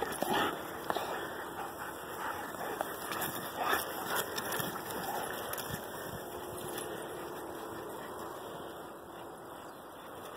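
Rottweilers scuffling and playing in grass close by, with short knocks and brief dog noises in the first few seconds. The sound fades gradually as the dogs run off.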